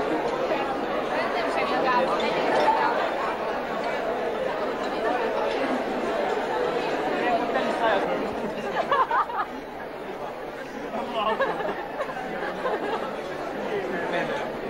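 Crowd chatter in a large hall: many diners talking at once, a steady wash of overlapping voices with no single voice standing out.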